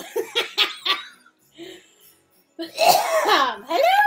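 A person laughing in a quick run of short bursts, then a longer drawn-out vocal exclamation that swoops up and down in pitch near the end.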